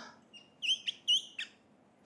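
A dry-erase marker squeaking on a whiteboard while letters are written: about five short, high squeaks in quick succession that bend in pitch, ending about a second and a half in.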